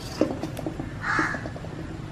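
A crow caws once, loudly, about a second in, over a few light clicks and scrapes of a wooden spatula against a steel pan.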